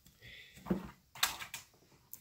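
Kittens scuffling and pouncing on a feather wand toy: light rustling and scratching, with a soft thump in the first second and a short, louder scrape a little after it.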